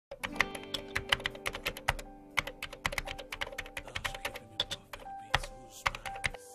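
Quick, irregular keyboard typing clicks, several a second, over soft background music with sustained tones.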